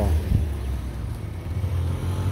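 A low, unsteady outdoor rumble with no clear engine note, just after a short spoken "wow" at the very start.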